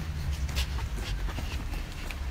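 Footsteps crunching on a gritty dirt path as people walk, a few short scuffs, over a steady low rumble of wind and handling on a handheld phone microphone.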